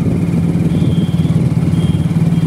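Motorcycle engine running steadily under its riders, a constant low engine note.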